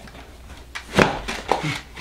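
A few short knocks and scuffs from a person pulling on a shoe while sitting on a wooden stool, the loudest about halfway through, with a short grunt near the end.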